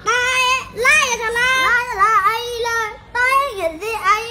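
A young boy's high voice chanting in a sing-song way, the pitch gliding up and down through long drawn-out phrases, with a short break about three seconds in.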